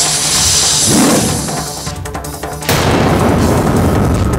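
Dramatic TV-serial background score with sound effects: a rising whoosh, then a sudden boom about two and a half seconds in that carries on as dense, loud music.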